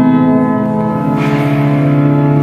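Church organ playing sustained chords, moving to a new chord about a second in.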